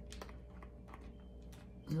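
A few light clicks and taps from hands handling small objects on a table, over a faint steady hum of room tone.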